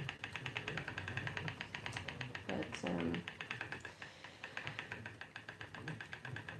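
Treadle spinning wheel running while flax is spun, giving a rapid, even ticking. A short vocal sound from the spinner comes about halfway through.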